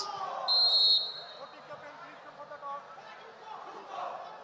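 A short, loud blast on a referee's whistle about half a second in, then the low chatter of a crowd in a large hall.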